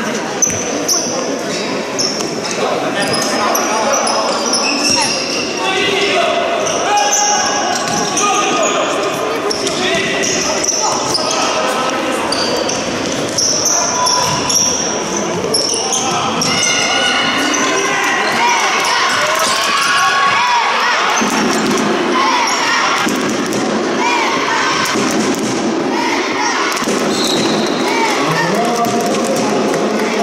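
Sounds of an indoor futsal game: the ball being kicked and bouncing on a wooden hall floor in repeated sharp knocks, with players and spectators calling out, all echoing in a large gym hall.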